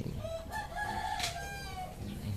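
A rooster crowing once, one stepped call lasting about a second and a half, fairly faint under the room.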